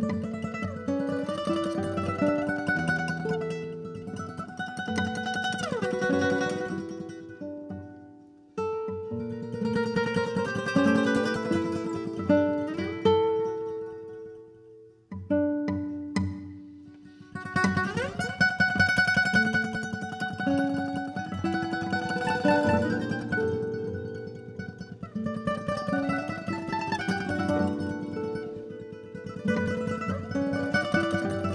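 Solo classical guitar layered through a loop pedal: quick, repeated plucked notes in a mandolin-like texture over held looped layers. The sound thins away twice, about eight and fifteen seconds in, then builds back up thick with layers.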